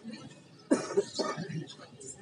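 A person's short, sudden vocal outburst, cough-like, about two-thirds of a second in, followed by a few brief voice fragments that fade out.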